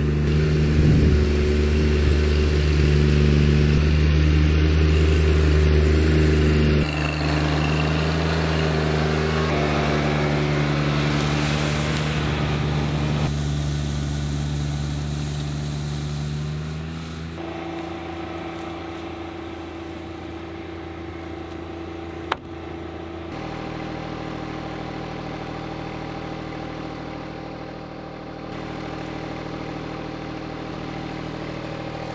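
John Deere 1025R compact tractor's three-cylinder diesel running steadily as it tows a lawn sweeper across grass. The engine drops abruptly in level at several cuts and is quieter in the second half, with one sharp click about two-thirds of the way through.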